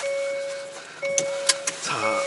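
Hyundai Veloster N's seatbelt warning chime: a steady electronic ding repeating about once a second, each tone lasting about two-thirds of a second. It is the car's signal that a seatbelt is unfastened. A few light clicks sound between the dings.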